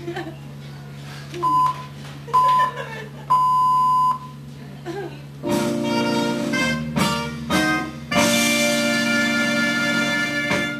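Three electronic beeps at one high pitch, two short and a longer third, like radio time-signal pips. About five and a half seconds in, recorded music starts with a few short chords and then a long held chord, as the opening of a mock radio programme.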